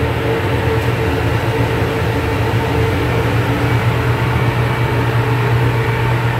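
Electrak 1 duct-cleaning vacuum collector running steadily: a loud hum with a steady whine over rushing air. It is pulling strong negative pressure on ductwork whose branch dampers are closed.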